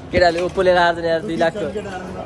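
A man's voice close to the microphone making drawn-out, wordless vocal sounds, with one long held tone in the middle.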